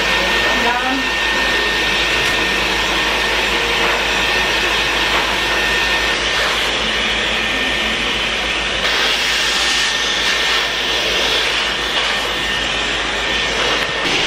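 Handheld hair dryer blowing on wet hair, a loud, steady rush of air. A thin high whine sits in it through about the first half, and the sound turns brighter a few seconds later as the dryer is moved over the hair.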